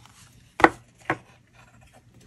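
Two sharp knocks about half a second apart, the first louder, as a folded cardstock card is handled and set down on a glass craft mat, with faint paper rubbing between.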